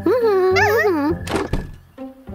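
A cartoon character's drawn-out wordless vocal sound, then a door shutting with a thud about a second and a half in.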